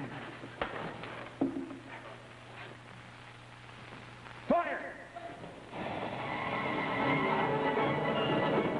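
A sudden ray-weapon sound effect with a quick upward pitch sweep about four and a half seconds in, as the solar mirror fires and turns the thrown water to steam. Dramatic background music then comes in and builds. Before that, a couple of knocks sit over a low steady hum.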